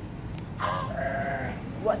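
An animal bleating once, a quavering call about a second long.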